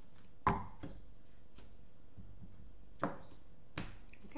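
A deck of oracle cards handled and shuffled by hand: a few sharp taps and slaps of the cards, the loudest about half a second in, then two more near three seconds and just before the end.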